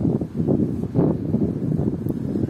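Wind rumbling on the microphone in uneven gusts.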